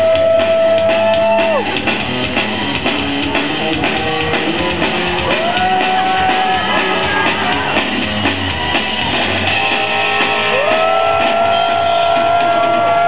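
Live rock band playing loud: electric guitar holding long notes that bend up and down, over steady drums.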